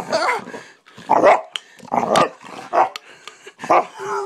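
A dog barking aggressively at a can it dislikes, a run of about five sharp barks spaced a little under a second apart.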